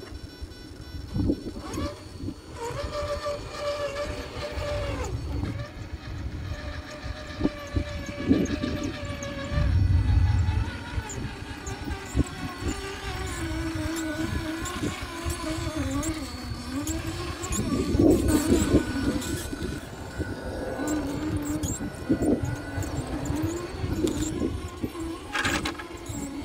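Scale RC rock crawler's electric motor and geartrain whining, the pitch rising and falling as the throttle is worked, with scattered knocks of the tyres and chassis on rock and wind rumble on the microphone.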